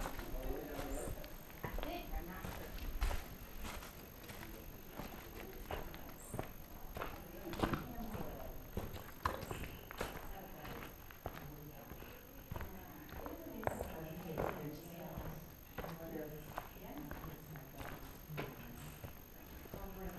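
Footsteps on loose rock rubble, an irregular run of knocks and scrapes underfoot, with faint voices talking further off.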